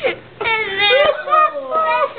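A young child's high-pitched, drawn-out whiny vocalization, wavering up and down in pitch, starting about half a second in.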